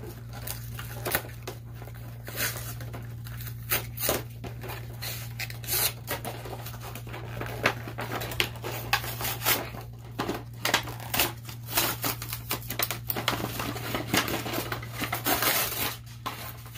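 Toy packaging being torn open by hand, with irregular tearing, crinkling and snapping noises throughout, over a steady low hum.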